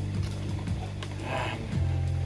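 Background music with a steady bass line that shifts note near the end, over a few faint clicks of a plastic model kit being handled and set down.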